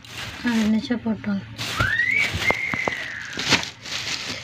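A short voice-like sound, then a single high whistle that rises in pitch and is held for about two seconds, slowly falling; a few sharp clicks fall around it.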